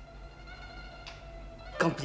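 Soft background music of steady held notes, with a voice starting near the end.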